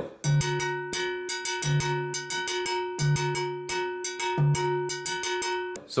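A timbale bell struck with a wooden stick in a rapid, steady montuno pattern, each stroke ringing. A low note recurs about every second and a half beneath it, and the playing stops just before the end.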